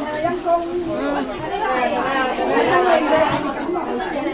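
Several people chatting at once, their voices overlapping.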